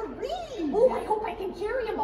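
A voice making wordless vocal sounds that slide up and down in pitch.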